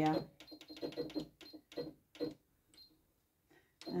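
Control-panel buttons of a computerised sewing machine being pressed repeatedly: a string of short clicks and a few short, high beeps as the needle position and stitch length are set.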